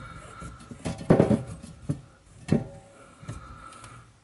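A few light knocks and clicks as a brass stop tap on a copper water pipe is turned by hand.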